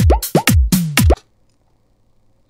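A programmed Bhojpuri-style drum beat playing back from a Cubase 5 session. Deep kick hits that drop sharply in pitch alternate with snare strokes in a fast rhythm, then playback is stopped and the beat cuts off suddenly about a second in.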